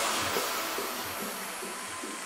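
Hands-up dance track in a break: the kick and bass drop out, leaving a white-noise wash that fades steadily, losing its top end towards the end.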